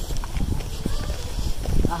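Footsteps on dry dirt ground, a run of uneven steps, with a steady low rumble underneath.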